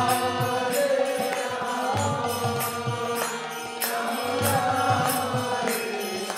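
Devotional kirtan music: a male lead voice chanting a melody over a harmonium's held notes, with a hand drum and small hand cymbals keeping a steady beat.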